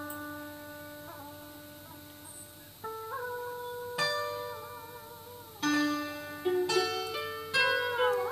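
Instrumental introduction to a Vietnamese tân cổ song: a slow plucked-string melody of single sustained notes, one of them wavering, with the notes coming faster and louder in the second half.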